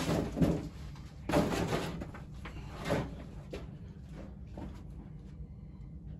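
A person rummaging about while searching for a figure's detached foot: rustling with a few dull knocks and bumps, busiest in the first three seconds, then dying away.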